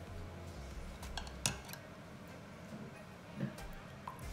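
A few sharp clinks of a steel spoon against a bowl, the loudest about a second and a half in, with a softer knock near the end, as a crisp puri shell is cracked open and the spoon scoops mint water (pani) to fill it.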